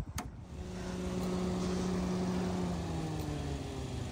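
A click, then a steady low motor hum with a slowly falling pitch, heard while an SUV with a dead battery is being jump-started from another car. The hum eases off near the end.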